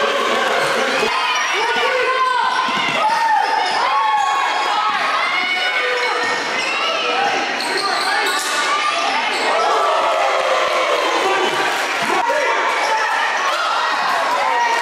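Live basketball game sound in a gym: a basketball bouncing on the hardwood court, sneakers squeaking and players and spectators calling out.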